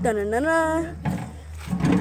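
A boy's voice drawing out one sing-song syllable for about the first second, its pitch dipping and rising, then quieter.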